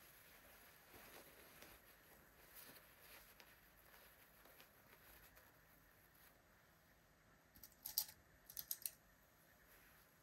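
Hands pinning lining fabric: faint rustle of cloth being smoothed, then a quick run of small sharp clicks from the pins, in two little groups about eight seconds in.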